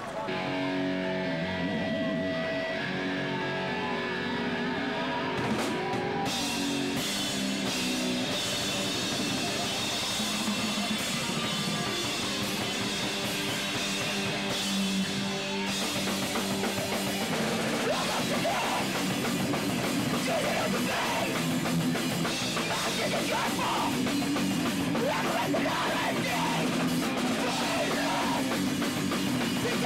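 Live punk band playing loud, distorted electric guitar with a drum kit, opening on held guitar notes, with drums and cymbals coming in fully about six seconds in. Shouted vocals through a microphone join in over the second half.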